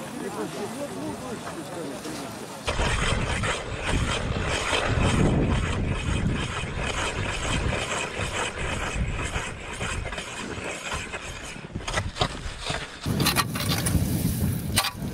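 Anglers' voices for the first couple of seconds. Then, about three seconds in, a loud, rough rustling and crunching, like footsteps in snow with wind buffeting the microphone of a body-worn camera. Near the end a hand ice auger starts grinding into the ice.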